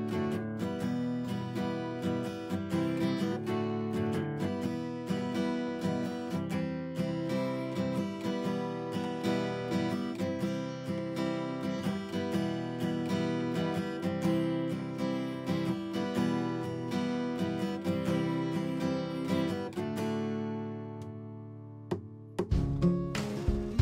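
Background music led by acoustic guitar playing a steady, rhythmic pattern, fading out near the end.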